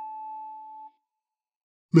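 A PRS electric guitar sustaining a pinched-harmonic note on the third string at the 7th fret, just after the bend has come back down. It rings as one high, steady tone that fades and stops about a second in.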